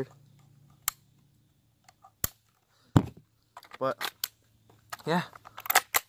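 Sharp clicks of a Mossberg Blaze-47 .22 rifle being handled, its magazine release worked: a few separate clicks spaced about a second apart, the loudest about three seconds in.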